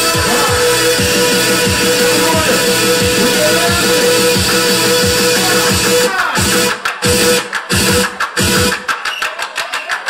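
Loud hardcore rave music played through a club PA by a DJ, with a fast, steady kick drum and a held synth note. About six seconds in, the kick drops out and the track chops in and out in quick stutters.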